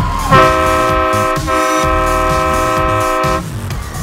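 Multi-trumpet air horn on a portable compressed-air tank, sounded in two blasts: a blast of about a second, a brief break, then a longer blast of about two seconds that cuts off sharply.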